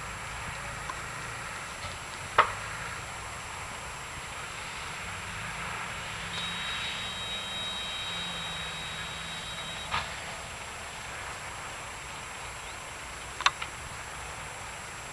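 Distant fire of a burning chemical freight train: a steady rushing noise broken by sharp cracks, the loudest about two seconds in and a double crack near the end. Midway a thin high whistle holds for about three seconds and stops with a crack.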